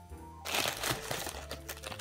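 Paper burger wrapping crinkling and rustling as it is pulled open by hand, starting suddenly about half a second in, with soft background music underneath.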